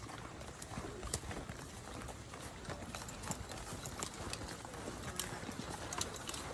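Footsteps of a file of soldiers in full kit walking past on a sandy dirt trail: irregular boot falls and knocks, with equipment and slung rifles clicking and rattling.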